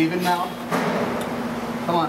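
Men talking to each other at close range, over a steady low hum.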